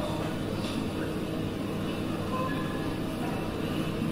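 Steady low hum of a large, crowded church's room noise, with fans running and the congregation shifting as it sits down in the pews.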